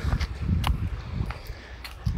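Footsteps on a stone path at walking pace, about two steps a second, over a low rumble.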